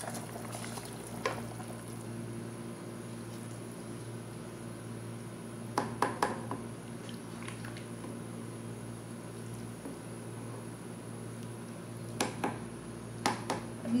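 A pot of water and spiced potatoes at a steady boil, bubbling, as soaked rice is poured in at the start and then stirred with a plastic spatula. A few short knocks of the spatula against the pot come about six seconds in and again near the end.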